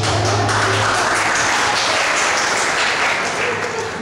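Audience applauding in a hall. The clapping swells about half a second in and dies down near the end.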